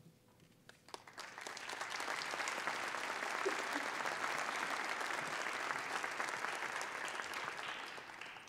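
Audience applauding, starting about a second in, holding steady, then beginning to fade near the end.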